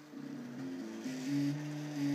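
Stepper motors of a home-built RepRap 3D printer whining as it prints, the pitch stepping up and down every fraction of a second as the moves change speed, louder for a spell in the second half.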